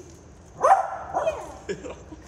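Small fluffy dog giving a few short barks, the loudest just under a second in.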